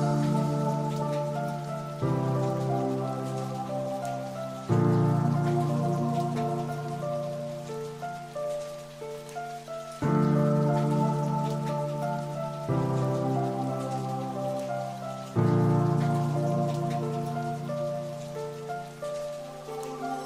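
Slow, calm instrumental background music: sustained chords over a low bass note, a new chord struck every few seconds and fading, over a steady rain-like hiss.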